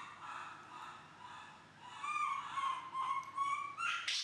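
Baby monkey crying in a series of thin, high coos and whimpers. They are short at first, then longer and louder drawn-out calls from about halfway through, as it is left alone in its basket.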